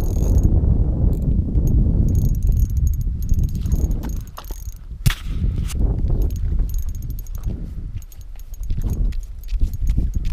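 Spinning reel being cranked in uneven bursts as a hooked fish is reeled up through an ice-fishing hole, over a low rumble, with a sharp click about five seconds in.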